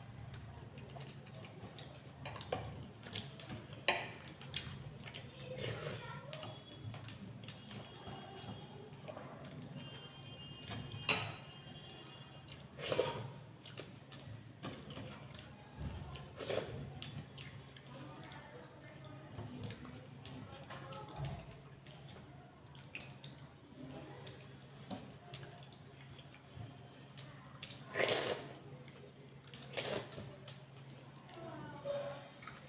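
Eating by hand at close range: fingers working rice and chicken on a plate, with chewing and mouth smacks and scattered sharp little clicks.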